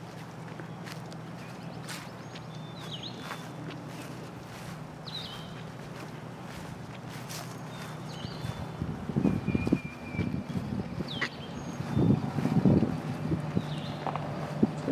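Footsteps through grass and leaf litter, coming as irregular soft thuds over the last five seconds or so. Small birds chirp now and then over a steady low hum.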